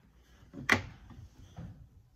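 A single sharp tap about two-thirds of a second in: a plastic-handled paintbrush set down on a tabletop.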